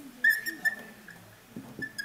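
Dry-erase marker squeaking on a whiteboard while writing: one squeal of about half a second a quarter second in, then a short one near the end.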